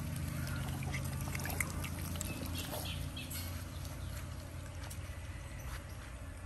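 Otters squealing and chirping in short, high calls as they crowd a basin of fish to beg, the calls thinning out over the last few seconds, over a low steady rumble.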